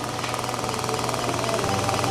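Surgical equipment gives a fast, even buzzing pulse over a steady low hum.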